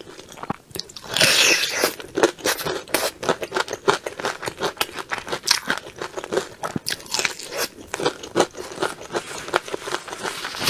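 A bite into crispy fried chicken coated in sticky sauce, close to the microphone: a loud crunch about a second in, then steady chewing full of small crunches and wet clicks.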